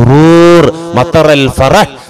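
A man preaching in a loud voice draws out one vowel for about two-thirds of a second, then says a few short words.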